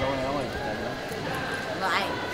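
Indistinct voices of people talking in a large gymnastics hall: background chatter with no clear words.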